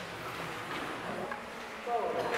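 Low room noise with faint scattered voices; near the end a group of voices starts singing.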